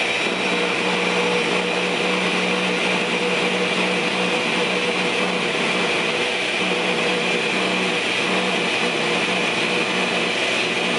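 Countertop blender running steadily, blending a pumpkin protein smoothie, with a steady motor whine.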